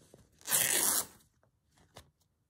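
Calico fabric ripped by hand along the grain, one loud tear about half a second long starting about half a second in, stripping the selvage off the edge.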